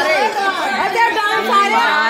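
A group of women's voices overlapping, several at once.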